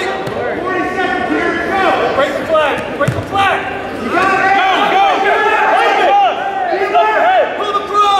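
Wrestling shoes squeaking on the mat in many quick, overlapping chirps as two wrestlers scramble and grapple, with a thump on the mat about three seconds in.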